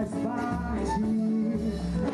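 Live band music on stage with a female singer holding long sung notes over the band and drums.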